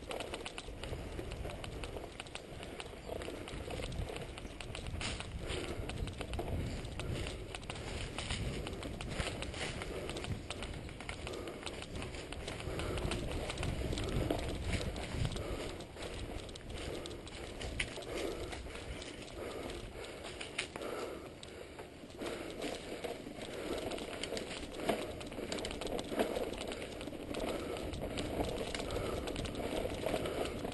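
Mountain bikes riding a rough dirt trail, heard through a camera riding along on one of them: tyres on dirt with a steady clatter of small rattles and knocks, over a low rumble of wind on the microphone.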